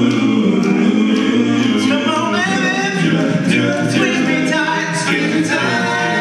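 Male a cappella group singing in close harmony through stage microphones, several voices holding chords with no instruments.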